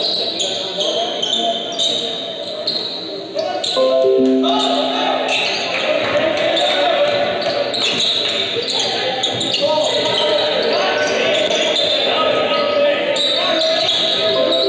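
Basketball game play on a gym floor: sneakers squeaking, a ball bouncing and the crowd's voices in a large hall. About four seconds in there is a short falling run of tones, after which the crowd gets louder.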